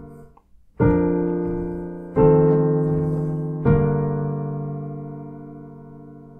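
Piano playing three four-voice block chords in B-flat major, about a second and a half apart: a cadential six-four, a dominant seventh, then a deceptive resolution to the vi chord, which is left to ring and fade.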